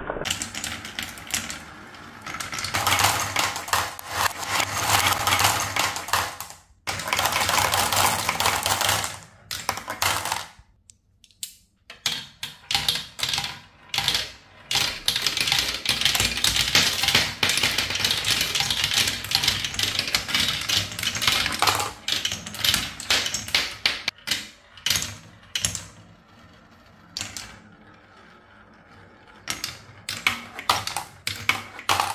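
Marbles rolling and clattering along wooden spiral tracks and plastic marble-run chutes: a dense stream of rapid clicks and rattles, broken by two brief pauses and quieter near the end.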